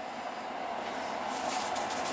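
Steady background hiss, joined from about halfway through by the grainy rattle of a shaker can of Slap Ya Mama Cajun seasoning being shaken over a pot of chili.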